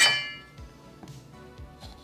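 A single bright clink of a metal utensil right at the start, ringing briefly and fading within about half a second, followed by a quiet stretch.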